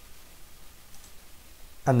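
A single faint computer mouse click about a second in, over quiet room tone.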